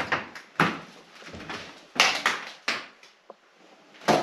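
Footsteps knocking and scuffing across a floor littered with cardboard and debris: a handful of knocks and scrapes, the loudest about two seconds in.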